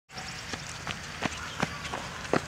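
Hoofbeats of a miniature donkey foal running on an asphalt driveway: sharp clops about three times a second over steady outdoor background noise.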